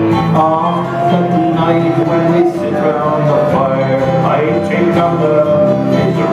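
Instrumental break in a live Irish folk song: a low whistle carries the melody in long held notes over strummed acoustic guitar and mandolin.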